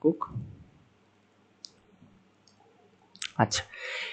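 A single short computer mouse click about a second and a half in, with a fainter tick just after, in a near-silent pause between a few spoken words.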